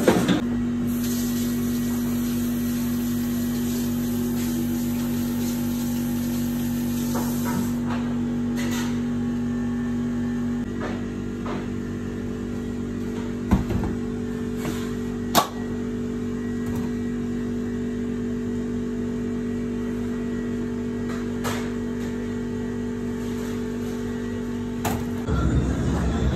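Steady machine hum of several fixed tones, part of it dropping out about ten seconds in, with a couple of sharp knocks around the middle.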